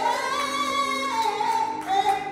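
Singing in church: a voice holds a long high note, then steps down to a lower one a little past a second in.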